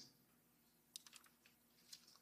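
Near silence: room tone, with a few faint short clicks about a second in and again near the end.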